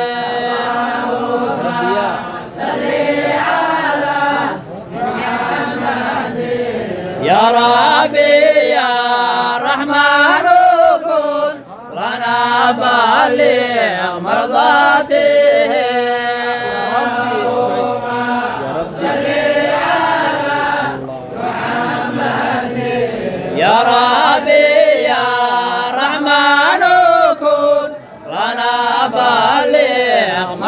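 A group of men chanting an Islamic devotional song of blessings on the Prophet Muhammad together, in long melodic sung lines with brief breaths between phrases.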